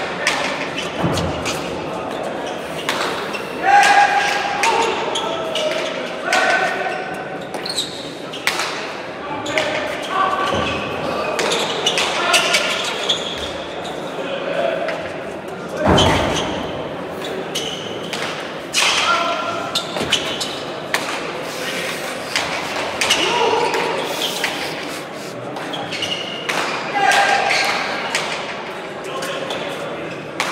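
A hard pelota ball is struck by bare hands and hits the walls of an echoing indoor court, making repeated sharp thuds spread through a rally, with the loudest strike about halfway through. Voices call out between the strikes.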